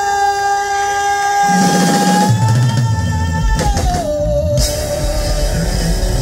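Live country-rock band: a woman's voice holds one long note that slides down a step and holds again, while the bass and drum kit come in under it about two seconds in.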